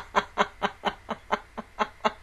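A woman laughing behind her hand: an even run of short, breathy laughs, about four a second, slowly getting quieter.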